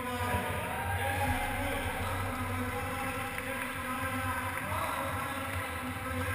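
Steady large-hall ambience: a low hum with indistinct background voices, and no clank of kettlebells.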